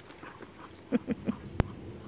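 Dogs at play: one dog gives three short, quick vocal sounds about a second in, followed by a single sharp click.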